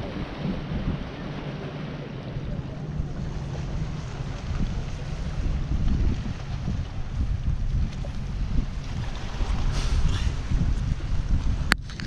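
Wind buffeting the camera microphone: a steady, gusting low rumble, with a sharp click near the end.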